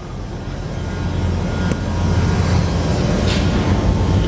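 Steady low mechanical rumble that grows louder over the first couple of seconds, with a brief faint rustle near the end.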